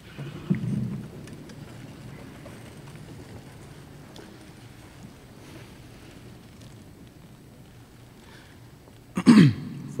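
Quiet room tone of a banquet hall heard through a PA microphone, with a brief muffled thump about half a second in. Near the end a man makes a short, loud vocal noise into the microphone, falling in pitch, just before he speaks.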